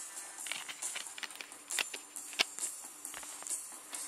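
Music plays in the background while a Blu-ray digipak and its clear plastic disc tray are handled, giving a scatter of clicks and rustles. The sharpest click comes a little past the middle.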